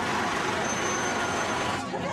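A truck engine running close by, a loud, dense rumble with voices mixed in, that cuts off abruptly shortly before the end.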